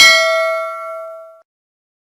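A single bell-ding sound effect for a notification-bell click in a subscribe-button animation. It is struck once and rings with several overtones, fading out about a second and a half in.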